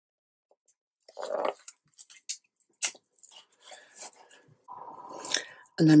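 Backing strips being peeled off double-sided tape on a card photo-frame board, with crackly rustling of the paper liner and card being handled, starting about a second in.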